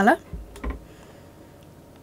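Two soft clicks with a low thump, about half a second in, from handling a computer mouse at a desk, then a faint steady hiss of room tone.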